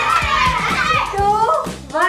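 Children shouting and cheering excitedly over background music with a steady beat.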